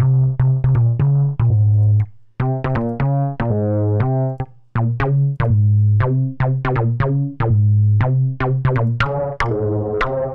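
Softube Monoment Bass, a sampler-based bass synthesizer, playing a looped programmed bass line with sharp clicky hits along with the notes. The bass tone changes about two seconds in and again around five seconds as different Source B presets are auditioned.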